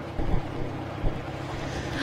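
Wind buffeting an outdoor microphone, with a couple of low rumbling gusts, over a steady low engine hum.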